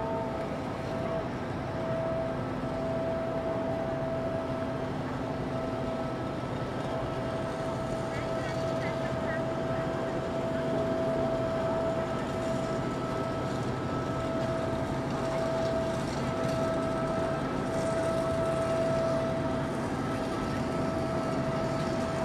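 Riverside city ambience: a steady mechanical hum holding one constant tone throughout, over an even wash of background noise and the indistinct chatter of people nearby, with a few faint chirps about a third of the way in.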